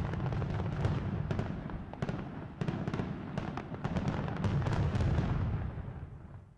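Fireworks crackling and popping over a low rumble, with many sharp cracks, fading out near the end.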